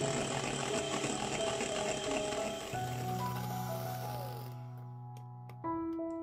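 Electric hand mixer running, its twin wire beaters whirring through creamed butter and sugar as an egg is beaten in, then switched off about four and a half seconds in. Background music plays throughout.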